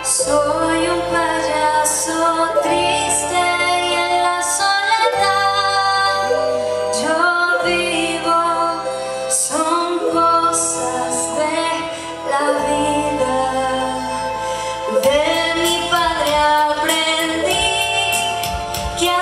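A solo female voice singing a song through a handheld microphone, over instrumental accompaniment with a bass line that moves in steps.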